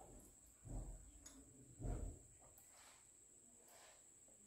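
Quiet room with two soft low thumps about a second apart, then faint sips of juice through drinking straws near the end.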